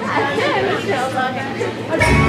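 Chatter of several people talking at once in a large hall.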